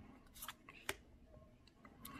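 Faint handling of tarot cards: a stiff cardstock card slid off the deck and laid onto a fanned pile, with a few light clicks, the clearest about a second in.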